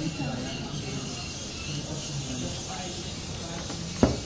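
Steady faint hiss with faint voices in the background; no clear drilling or grinding.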